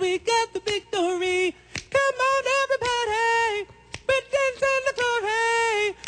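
A single male voice singing a wordless a cappella harmony part on its own, held notes broken into short sung syllables: one vocal line of a chorus arrangement, sung without the other voices.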